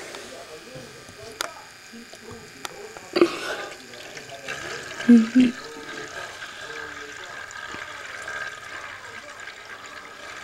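Water tornado maker running: its small motor spins the water in the cylinder into a vortex, with swirling water and a steady whine that sets in about four seconds in. A knock about three seconds in, and two short loud sounds just after five seconds.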